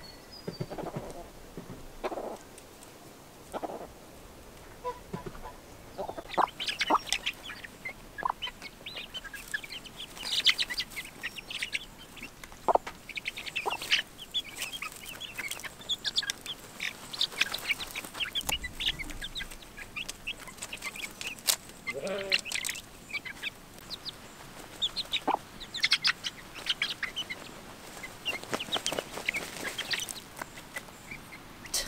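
A flock of hens with young chicks clucking and cheeping while dust bathing, with many short scratchy rustles in loose dirt among the calls.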